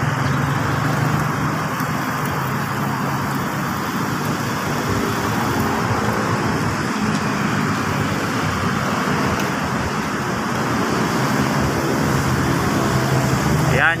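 Steady engine hum under a broad, even rushing noise, without a break or a sudden event.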